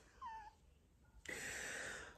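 A short, faint, high squeak that falls in pitch, a silly little vocal whimper, followed just over a second in by a soft breathy exhale.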